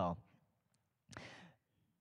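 A man's word trailing off, then about a second later a short breath drawn in close to a handheld microphone.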